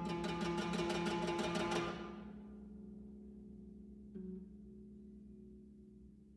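Bass zither played with fast, evenly repeated plucked strokes on a sustained chord. The strokes stop about two seconds in and the strings are left ringing and fading. A single low note is plucked a little after four seconds.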